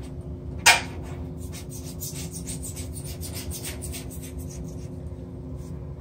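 Razor blade scraping soft Bondo body filler along a tub-to-tile seam in short repeated strokes, with one sharper scrape near the start. The filler is still soft, so the blade trims it to a clean edge.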